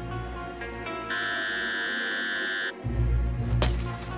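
A steady electric buzz that starts about a second in, holds for about a second and a half and cuts off suddenly, over suspenseful background music; a sharp click follows near the end.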